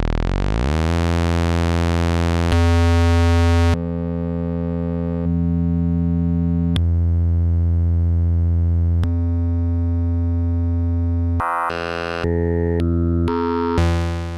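Synthesis Technology E350 Morphing Terrarium wavetable oscillator droning at a low pitch, first sliding down in pitch, then holding the note while its tone jumps abruptly from one waveform to another several times, faster near the end. The jumps come from the MTX expander's glitch mode, which switches between wavetables without the smooth morph.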